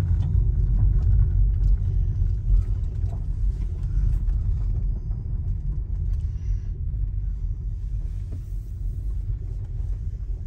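Low rumble of a car driving slowly, heard from inside the cabin, easing off a little as the car slows down.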